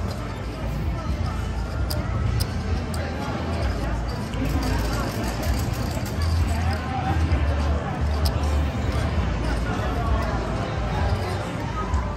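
Casino table ambience: indistinct background chatter over a steady low hum, with a few small sharp clicks from cards and chips being handled.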